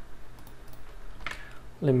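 A few computer keyboard key clicks over a faint steady low hum; a man starts speaking near the end.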